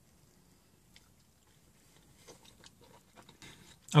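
A person biting and chewing a mouthful of a deep-fried Taco Bell Quesalupa shell. The sound is faint: a single small click about a second in, then a run of soft crunching and mouth sounds through the second half.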